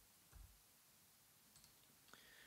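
Near silence: room tone with a few faint clicks from a computer keyboard and mouse.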